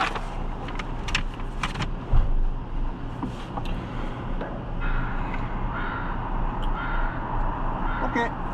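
Lamborghini engine idling steadily, heard from inside the cabin. Papers rustle with a few sharp clicks in the first two seconds, and there is a single dull thump about two seconds in.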